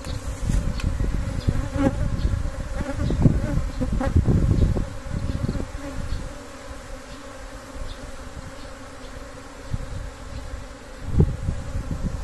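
A swarm of Asian honeybees buzzing steadily as they settle into a mesh swarm-catching bag. Low rumbling bursts come through in the first five seconds, and there is a single knock near the end.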